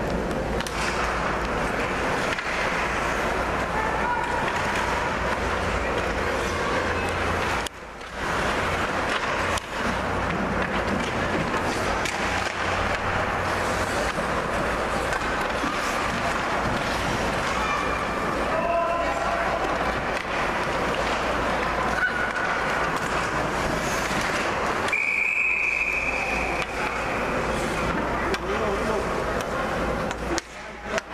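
Ice rink game noise: spectators' voices and shouts over a steady arena hum. A single referee's whistle blast of about a second, near the end, stops play.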